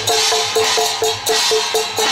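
Procession percussion of small handheld gongs struck in a quick, even beat of about four strokes a second, with noisy metallic crashes coming in about once a second.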